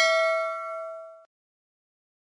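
Notification-bell 'ding' sound effect ringing out and fading from the subscribe-button animation, stopping about a second in.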